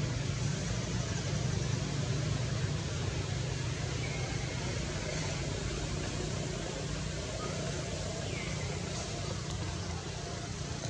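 Steady low outdoor rumble with a haze of background noise, broken by a few short, high, falling chirps about four seconds in and again near the end.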